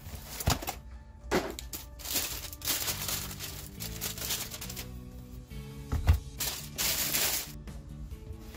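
A thin plastic sleeve rustling and crinkling as a laptop is pulled out of it and its molded packing end caps, with a few sharp clicks and knocks from handling, the loudest knock about six seconds in. Background music plays underneath.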